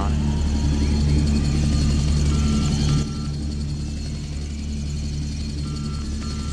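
A steady low drone, a little quieter from about three seconds in, with short pairs of faint high electronic beeps about halfway through and again near the end.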